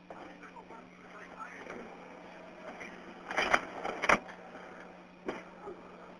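Recorded telephone-line audio: faint, low voices over a steady hum, broken by loud sharp noises about three and a half seconds in, again just after four seconds, and a smaller one about a second later.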